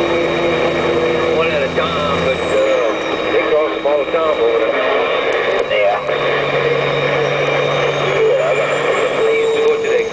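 Inside a Peterbilt truck's cab on the move: the diesel engine and road noise drone steadily, the engine note shifting a couple of times, with a faint high whistle that falls away and later rises again.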